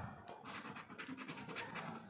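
A coin scraping the silver latex coating off a scratch-off lottery ticket in short, quiet strokes.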